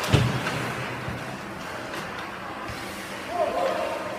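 Ice hockey rink game noise: a single loud thud with a low ringing just after the start, then the steady din of the arena, with a shout about three seconds in.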